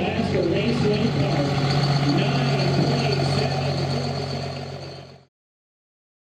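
Dodge Ram diesel race truck running at a low, steady idle as it rolls slowly along, with spectators' voices over it; the sound fades out about five seconds in.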